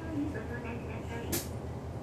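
City bus's diesel engine idling with a steady low rumble while stopped, heard from inside the bus. A faint voice can be heard over the first second, and there is a sharp click about a second and a half in.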